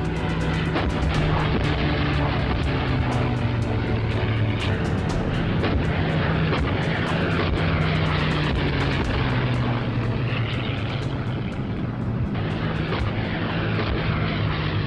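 Piston-engined propeller aircraft droning past low on an old wartime film soundtrack, its pitch shifting, with constant crackle and clicks from the worn film sound.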